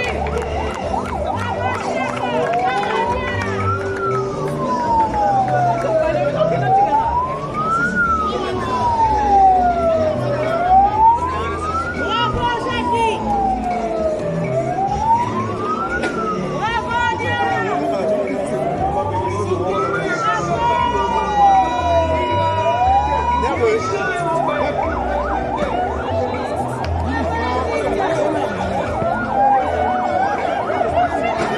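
A vehicle siren wailing slowly, rising and falling in pitch about every four seconds, six times over, then stopping shortly before the end, over the voices of a crowd.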